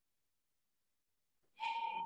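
Silence for about a second and a half, then a voice comes in near the end on a steady held note.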